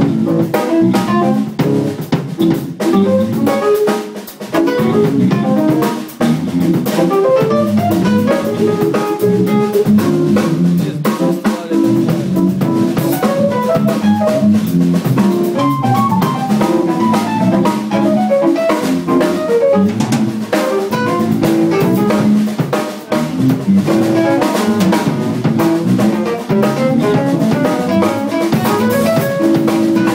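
Live jazz band playing, with a busy drum kit prominent over keyboard, saxophone and bass guitar.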